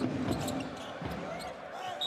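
Basketball dribbled on a hardwood court, a few bounces over steady arena crowd noise.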